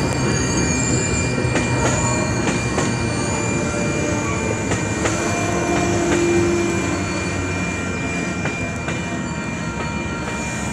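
Amtrak passenger cars rolling past over a road crossing. Steady wheel-on-rail rumble with irregular clicks from the wheels and a thin, steady high tone, easing slightly in loudness toward the end.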